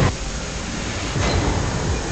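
Film-trailer sound effects: a sudden hit, then a steady, dense rumble like a passing train.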